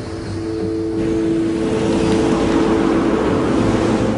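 A rushing noise that swells over the first couple of seconds and holds, under two sustained low tones.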